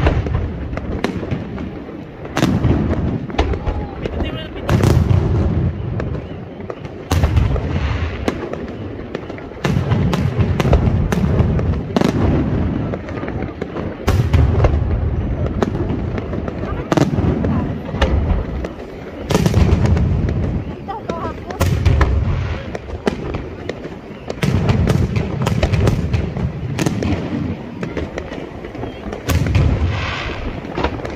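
Fireworks display: aerial shells bursting in a continuous series of sharp bangs, with deep booms about every two seconds.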